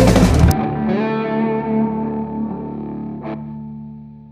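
Instrumental alternative rock with distorted electric guitar, bass and drums ending: the band stops on a final hit about half a second in, and the last distorted guitar chord and bass note ring on and slowly fade out.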